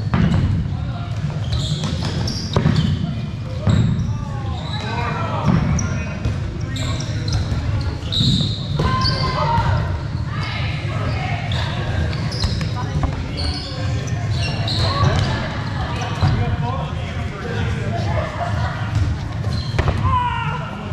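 Dodgeballs thrown during play, thudding and bouncing on the hard court floor several times at irregular moments, with players' voices calling out in an echoing sports hall.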